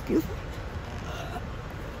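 Steady low rumble inside a passenger train carriage, with a short loud voice sound just after the start and a fainter brief sound about a second in.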